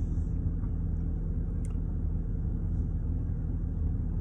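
Car engine idling, a steady low hum heard from inside the cabin, with one faint tick about one and a half seconds in.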